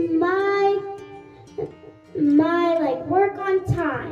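A young girl singing into a handheld microphone, two long held melodic phrases with a short breath-pause between them.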